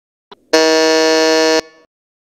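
A single buzzy electronic tone, held at one steady pitch for about a second and cut off sharply, after a faint click just before it.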